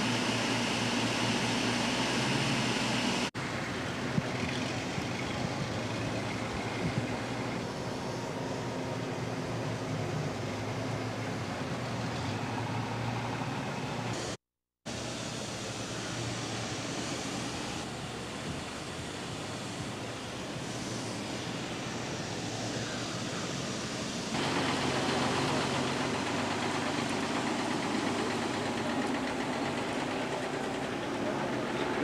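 Steady mechanical drone with a low hum under an even wash of background noise. The sound changes abruptly about three seconds in, drops out completely for a moment near the middle, and gets louder again from about 24 seconds on.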